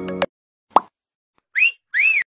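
Music cuts off suddenly, then a single short plop falling quickly in pitch, followed by two short whistled chirps that each rise and fall in pitch, like cartoon-style sound effects.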